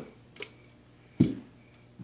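A sharp click about a second in, after a fainter tick, in an otherwise quiet room.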